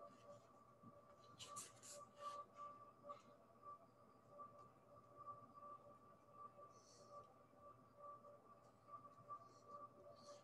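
Near silence: a faint steady high hum throughout, with a few faint soft handling sounds as hands press clay together.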